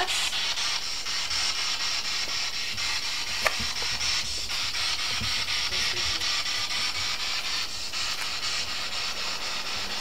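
Steady high-pitched hiss with no voices, broken by one sharp click about three and a half seconds in.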